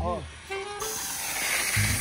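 A short exclamation, then the bass-heavy music breaks off and a steady hiss starts about a second in; the bass beat comes back in near the end.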